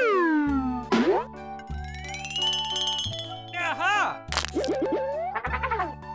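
Cheerful children's background music with cartoon sound effects laid over it: a falling pitch glide at the start, a rising glide that levels off into a held high tone, then a run of quick boings and rising sweeps in the second half.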